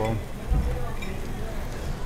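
Restaurant dining-room background noise, steady and without clear words, with one short low bump about half a second in.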